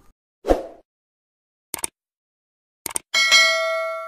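Subscribe-button animation sound effects: a short thud about half a second in, a click near two seconds and another near three, then a bell ding that rings out and slowly fades.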